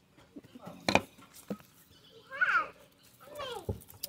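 Hands handling and picking apart a dried-out succulent, giving a sharp click about a second in and a few small ticks. A short high-pitched call sounds around the middle.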